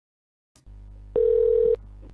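Telephone line on a recorded call: a click about half a second in, then a low steady line hum and a single steady telephone tone lasting about half a second, just before the call is answered.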